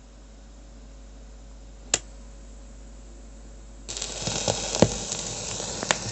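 Surface noise of a shellac 78 rpm record under the stylus in the lead-in groove: a faint hiss over a low hum with one sharp click about two seconds in, then from about four seconds a much louder hiss with crackles and several pops.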